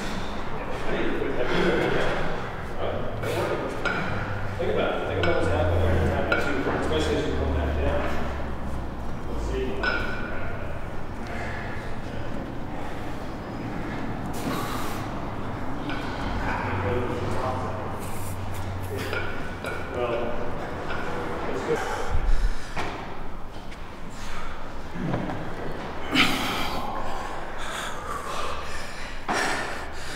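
Indistinct voices in a large gym room, with a single heavy thud about two-thirds of the way through.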